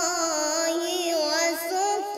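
A boy reciting the Quran in a melodic chant, one continuous voice holding long notes that waver slowly in pitch.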